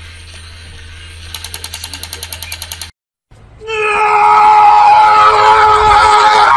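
Battery-powered crawling toy soldier's gear mechanism clicking rapidly, about ten clicks a second, over a low hum. After a break, a long, loud, high-pitched cry is held on one pitch.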